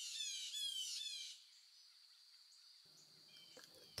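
A bird singing a quick series of clear, high, downslurred whistled notes, about five a second, that stops about a second and a half in, followed by near silence.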